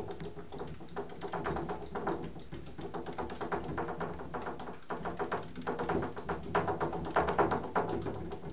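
Pet hedgehog running in a plastic exercise wheel in shallow bathwater: a fast, uneven patter of small clicks and taps from its feet and the turning wheel, louder in bursts near the end.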